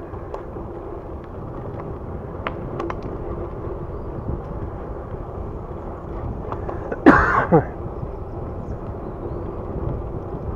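Wind buffeting the microphone over the steady rumble of Raleigh Redux bicycle tyres rolling on a paved path, with a few light ticks. About seven seconds in, a brief loud sound with falling pitch cuts through for half a second.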